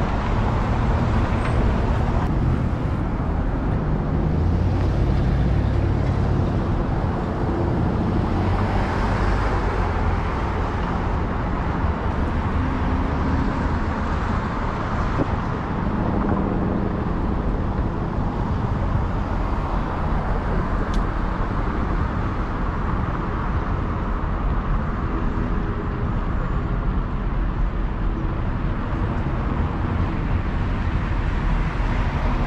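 City street traffic noise, heard from a camera on a moving bicycle, under a steady low rumble.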